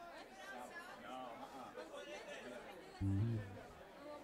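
Faint crowd chatter, many voices talking at once. About three seconds in comes a short, loud, low-pitched note lasting about half a second, the loudest thing here.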